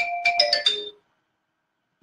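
Phone ringtone playing a quick melodic run of chime-like notes, cut off about a second in as the call is answered.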